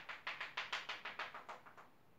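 Chalk tapping rapidly on a chalkboard, dotting out a line in a quick even run of sharp taps, about seven or eight a second, that stops just before the end.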